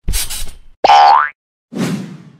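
Cartoon sound effects for an animated logo: a short rushing noise, then a springy boing rising in pitch, then a low noisy hit that dies away near the end.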